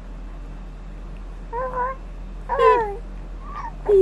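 Newborn baby cooing in short, high-pitched vocal sounds: a brief coo about a second and a half in, a louder falling one a second later, and a longer coo beginning right at the end.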